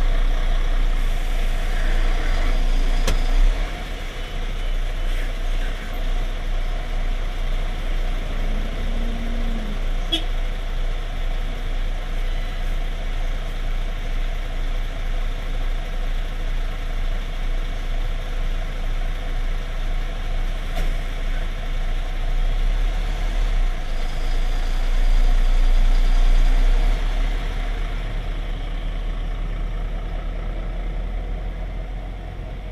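Heavy lorry's diesel engine idling steadily, with a few sharp clicks over the hum. The engine gets louder for a couple of seconds shortly before the end.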